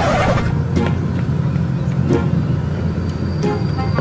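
A motor scooter's small engine running steadily with a low hum.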